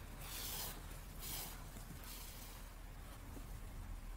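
Soft rustle of thick milk-cotton yarn drawn through knitted fabric with a yarn needle while sewing a seam, two brief faint swishes in the first second and a half.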